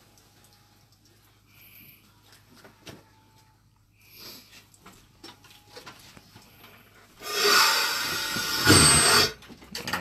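Compressed air from a Quik-Shot inversion unit rushing out in a loud hiss for about two seconds near the end, as the pipe liner finishes inverting. Before that, only a faint steady hum and a few small knocks.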